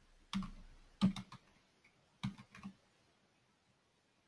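Typing on a computer keyboard: about eight keystrokes in three quick groups over the first three seconds, as a short word is typed into a chat box.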